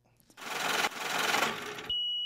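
Outro transition sound effect: a rasping, hiss-like noise burst lasting about a second and a half, then a steady high-pitched tone that starts just before the end.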